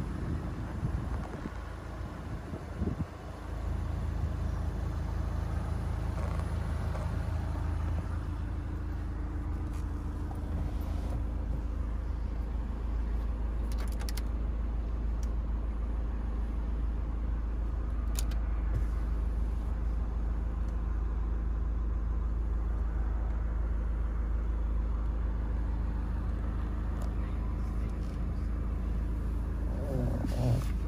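A Skoda Octavia's engine idling steadily, heard from inside the cabin, with a few faint clicks.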